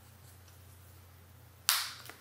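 Sharp crack near the end, after quiet room tone with a steady low hum, typical of the priest breaking the large host over the chalice close to the altar microphone.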